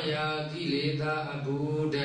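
A Buddhist monk's voice chanting through a microphone, drawing the syllables out on long held pitches, over a steady low hum.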